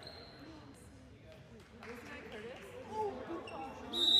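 A handball bouncing on a hardwood gym floor with a few sharp knocks, players calling out from about halfway through, and a referee's whistle starting right at the end.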